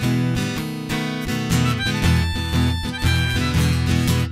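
Acoustic guitar strummed in a steady rhythm during an instrumental break, with a lead instrument playing held high notes over it from about two seconds in.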